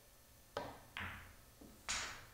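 Pool cue tip striking the cue ball, then a moment later the click of the cue ball hitting the object ball, followed by a faint knock and a louder knock near the end as the balls hit the cushions and pocket.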